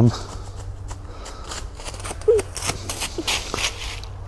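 Footsteps in dry fallen leaves: a run of crisp rustles starting about a second and a half in, with a brief faint voice sound about two seconds in.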